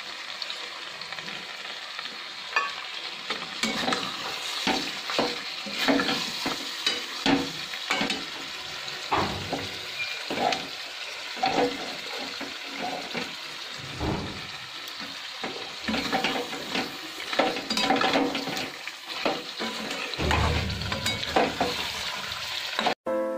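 Chicken curry frying in a metal kadai with a steady sizzle, while a flat metal spatula stirs and scrapes it. Irregular clinks and scrapes of metal on the pan run throughout.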